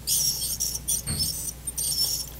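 Satelec P5 Neutron piezoelectric ultrasonic scaler with an H3 tip vibrating against a plastic typodont tooth. It makes a high-pitched, scratchy buzz in three short bursts as the tip strokes the deposit, with a brief low thump about a second in. This chatter comes from the tip on typodont plastic and does not happen on natural teeth.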